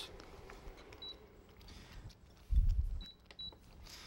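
Short, high single-tone beeps from a portable induction burner as the pan is worked on and lifted off it: one about a second in, then two close together near the end. A dull low thump a little past halfway is the loudest sound.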